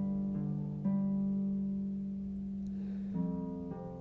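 Soft instrumental background music of slow, ringing plucked notes, a new note sounding every second or so and each held until the next.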